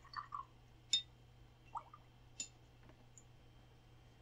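Quiet room with two faint, short, sharp clicks about a second and a half apart, over a low steady hum.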